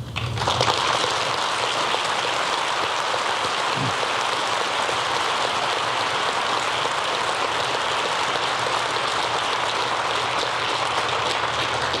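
Audience applauding: the steady, dense clapping of a large seated crowd in a hall, starting about half a second in and holding at an even level.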